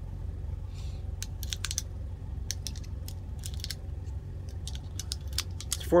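Irregular small metallic clicks and clinks of .380 ACP cartridges being handled and pressed into a Ruger LCP II pistol magazine, over a steady low hum.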